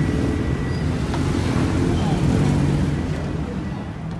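Steady low rumble of city street traffic and engines.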